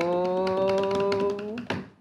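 A woman's voice holding one long, steady note as a mock drum roll, with light taps on the desk; the note stops about one and a half seconds in, followed by a sharper tap.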